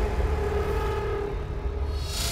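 Deep, steady cinematic rumble of trailer sound design, with a sustained hum that fades out about a second and a half in.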